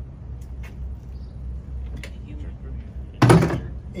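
A short, loud clatter about three seconds in as a metal foam eductor is handled at a fire engine compartment, over a steady low rumble.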